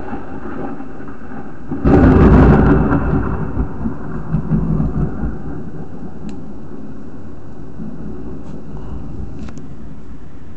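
A thunderclap about two seconds in, followed by rumbling thunder that fades over the next few seconds.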